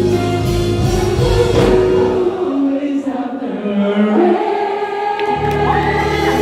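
A live band with singing, heard from among the audience in a large hall. About two seconds in, the drums and bass drop out, leaving held vocal notes over light backing, and the full band comes back in near the end.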